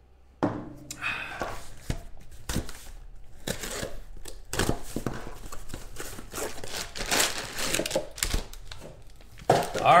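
Cardboard trading-card box being torn open by hand, starting about half a second in: repeated tearing, crinkling and knocks of the cardboard and its contents being handled.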